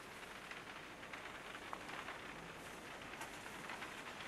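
Faint steady hiss with scattered soft ticks and crackles.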